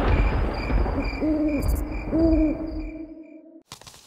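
Cartoon owl hooting twice, about a second apart, over a low rumble that fades away.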